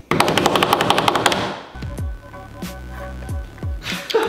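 A fast, even drum roll of about a dozen strokes a second, lasting about a second and a half, followed by quieter background music with several deep falling bass hits.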